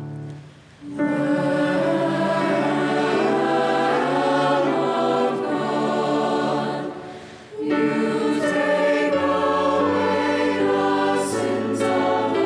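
Mixed youth choir singing slow, sustained church music. The singing begins about a second in as a keyboard chord fades, and breaks off briefly between phrases about seven seconds in.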